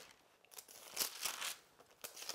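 Faint rustle and crinkle of thin book pages being leafed through, with a few soft clicks, beginning about half a second in, as a passage is looked up.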